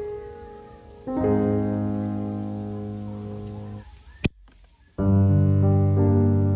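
Background piano music: slow, sustained chords, with a new chord about a second in and another about five seconds in. A single sharp click comes in the short lull just before the second chord.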